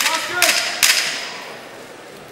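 Two sharp wooden clacks just under a second apart, echoing in the hall: the clapper marking ten seconds left in the round. A voice calls out over the first clack.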